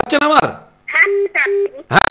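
Telephone line ringing tone heard over the studio phone line: a double ring of two short, low, steady beeps in quick succession about a second in, the cadence of the Indian ringback tone. A brief bit of speech comes just before it.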